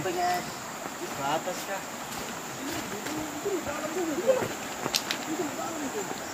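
Indistinct men's voices talking and calling in snatches over a steady hiss of a shallow river, with a few short clicks.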